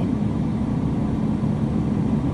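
Steady low rumble of a BMW X1 heard from inside its cabin as it creeps through a parking garage: engine and tyre noise at low speed.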